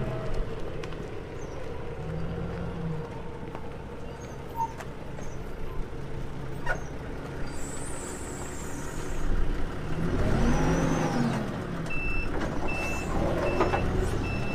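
A forklift engine runs steadily, revs up and falls back about ten seconds in, and then its reversing alarm starts beeping at a bit faster than one beep a second.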